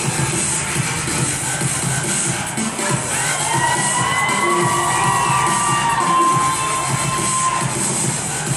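Upbeat dance music playing for a stage routine, with the audience cheering and a long high-pitched shout rising over it from about three seconds in until near the end.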